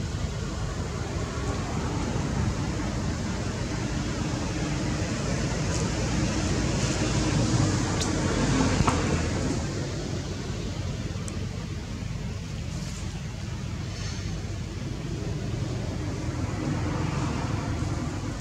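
Steady low rumbling outdoor background noise, swelling slightly around the middle, with a few faint clicks.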